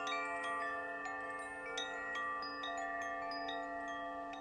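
Chimes ringing: many overlapping bell-like tones struck at uneven moments, each ringing on.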